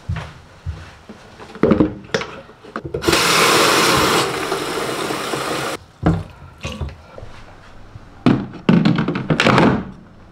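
Bathroom sink tap running for about three seconds into a robot mop's plastic water tank, stopping suddenly. Hollow plastic clunks and knocks as the tank and its lid are handled, loudest near the end.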